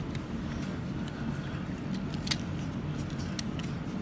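Plastic parts of a Transformers Optimus Prime action figure being handled during its transformation: a couple of small clicks, one a little past halfway and one near the end, over a steady low room hum.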